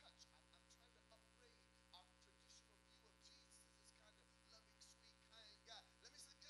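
Near silence: a faint, steady electrical hum, with faint traces of a distant voice.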